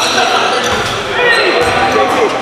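Basketball game sounds in a gym: the ball bouncing on the hardwood court, with players' voices echoing in the hall.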